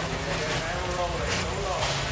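Untranscribed voices talking over the steady low rumble of a roller coaster train rolling out of the station.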